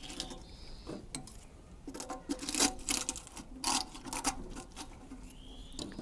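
Pine cones dropped by hand into the metal fire tube of an old Tula samovar, giving a run of irregular light knocks and rattles, thickest in the middle of the stretch.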